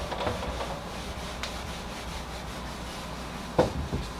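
Whiteboard eraser rubbing across a whiteboard, wiping off marker writing. Two sharp knocks come close together near the end.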